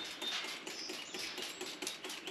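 Plastic trigger spray bottle squirting cleaner onto a steel car frame in a rapid run of short squirts.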